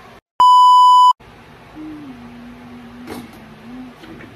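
A loud electronic bleep, one steady high beep tone lasting under a second, with dead silence just before and after it. Then a faint low hum holds one note for about two seconds.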